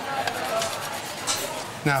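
Metal spoon scraping and clinking against a stainless steel pan as risotto is spooned out onto plates, with a sharper clink a little past halfway.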